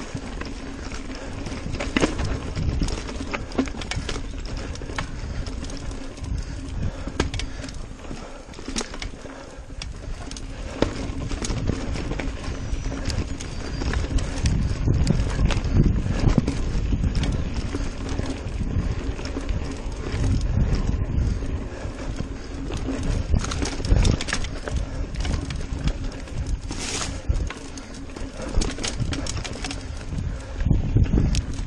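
Niner RIP 9 mountain bike ridden fast down rocky singletrack: a continuous rumble of tyres on dirt, broken by irregular knocks and rattles as the wheels hit rocks and roots.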